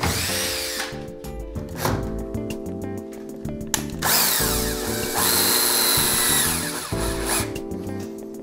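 Cordless drill-driver driving screws in bursts, fixing a roller shutter's fabric strap to its steel roller shaft: a short run at the start, two brief blips around two and nearly four seconds in, then a longer run of about three seconds from four seconds in, its motor speed rising and falling.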